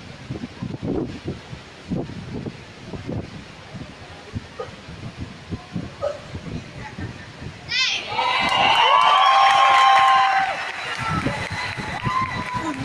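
Arena spectators murmuring and talking, then about eight seconds in a loud burst of crowd cheering and shouting lasting about two seconds before it dies down.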